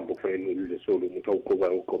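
Speech only: a voice talking over a telephone line, its sound cut off above the middle of the range.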